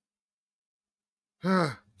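Silence for about a second and a half, then a person's short, breathy sigh with falling pitch near the end.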